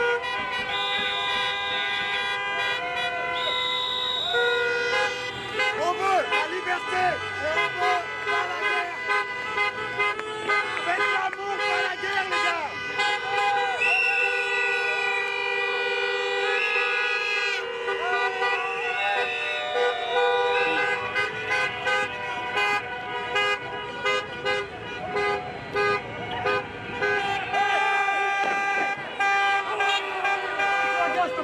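Many car horns honking at once in a long, overlapping din, with a high whistle blown at times and people shouting and cheering.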